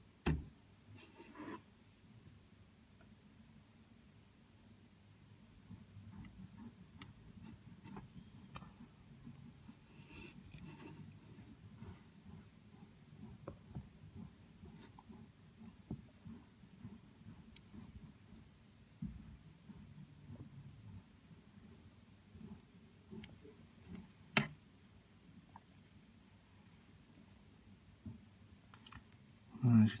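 Quiet room with a faint low handling rumble and a few scattered sharp clicks, the loudest just after the start and another late on.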